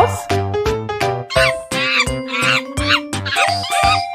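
Monkey calls: a quick run of short, high squeaky cries starting about a second and a half in, over children's backing music with a steady beat.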